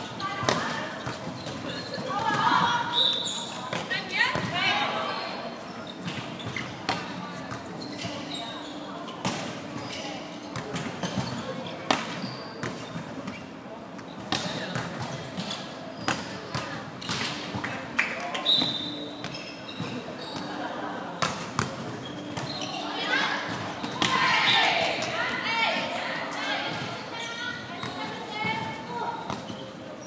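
Indoor volleyball being played: the ball slaps off players' hands and bounces on the wooden court again and again, with players' shouted calls, echoing in a large sports hall. The voices are loudest a few seconds in and again near the end.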